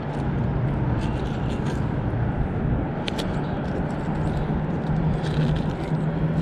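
Steady rumble of road traffic with a low engine hum, and a few light clicks as gloved hands pick through rusty metal debris clinging to a fishing magnet.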